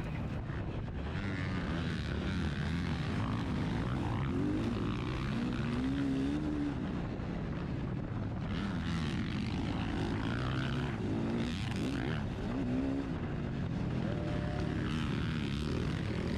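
KTM motocross bike engine under race throttle, its pitch rising and falling as the rider gets on and off the gas, picked up by a helmet-mounted GoPro.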